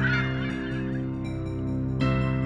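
A steady low drone of several held tones, dipping slightly in the middle and swelling again near the end.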